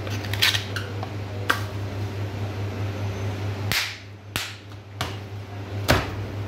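Knife and meat being handled on a plastic cutting board while trimming a cut: a series of sharp knocks and clicks, the loudest near the end, over a steady low hum.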